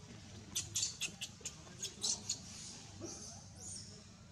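Infant macaque crying in a quick run of short, high-pitched squeaks, about eight in two seconds, with one fainter squeak near the end.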